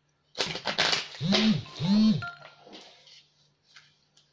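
Electronic alert from a connected device that is an annoyance during recording. A short noisy burst comes first, then two identical tones, each rising and then falling in pitch.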